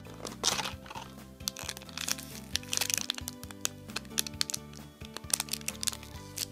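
Clear plastic packaging crinkling and crackling in irregular bursts as a plastic clamshell and cellophane bags are handled, over background music with held notes.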